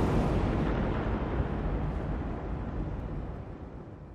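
A deep, rumbling explosion-like trailer sound effect, slowly dying away.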